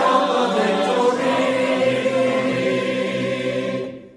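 A group of voices singing a hymn together. The last note fades out just before the end.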